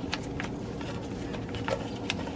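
A few faint clicks and rustles of a plastic wiring-harness clip being worked off its stud on the oil pan, over a steady background hum.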